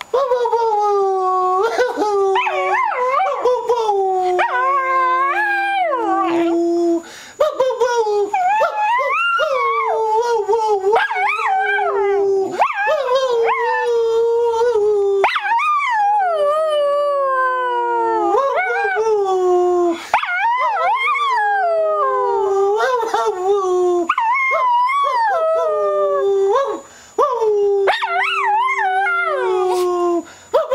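Small terrier howling in long drawn-out calls, each starting higher and sliding down in pitch, with short breaks between them.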